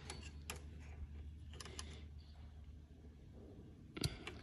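A few faint metallic clicks of a spanner on nuts and linkage in a tank's brake housing: one about half a second in and two close together past a second and a half, over a low steady hum.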